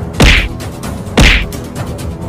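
Two loud punch sound effects, whack-like hits about a second apart, dubbed over a brawl.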